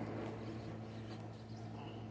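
Faint rustling and scraping of a Kirby vacuum's paper disposable bag as its collar is twisted on the dirt tube to free it from the locking tabs, over a steady low hum.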